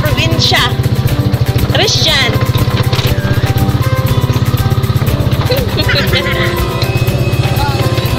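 Small motorcycle-type engine running steadily under the passengers, with brief high voices calling out over it a few times.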